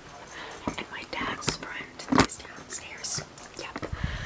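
A person whispering, broken by a few sharp clicks, the loudest one a little past halfway.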